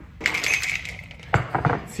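Ice rattling in a glass cocktail shaker with a metal lid, then a few sharp clinks and knocks about one and a half seconds in as the shaker is handled and set on a stone counter.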